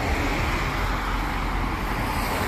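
Road traffic on a busy multi-lane road: a steady wash of tyre and engine noise from cars passing close by.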